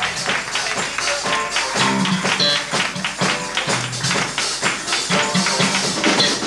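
A live funk band playing a Brazilian-style groove, with quick, busy percussion strokes over a stepping electric bass line.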